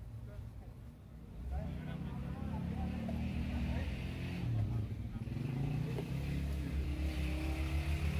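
A motor vehicle engine running nearby, rising in level about a second and a half in, with people talking in the background.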